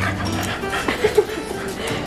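A dog vocalising briefly, with a sharp peak about a second in, over background music.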